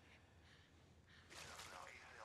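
Near silence: quiet room tone, with a faint breath from a person starting a little past the middle.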